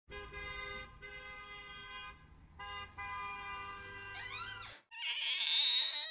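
A car horn honking in several long, steady blasts of uneven length over a low engine hum. Near the end comes a short rising squeal, then about a second of noisy, wavering sound.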